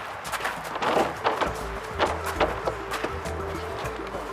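Background music with a repeating mid-pitched note over a low pulse, with a few short sharp hits.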